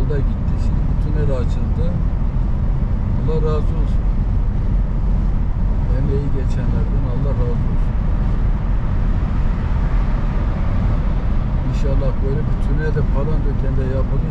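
Steady, low road rumble of a car heard from inside the cabin while driving through a road tunnel.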